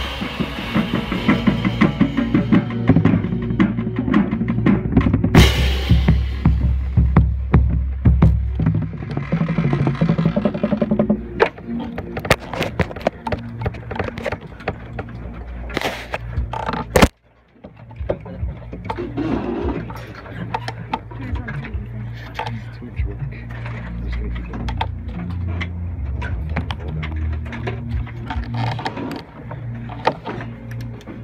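Marching band playing, heard from a camera mounted on a marching bass drum: deep, close bass drum strokes over the band for the first ten seconds or so. Then it drops to a quieter stretch of voices and knocks, with a brief silent gap partway through.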